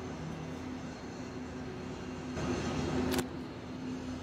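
Steady hum of a motor vehicle running, growing a little louder for about a second near the end, with a short click as it peaks.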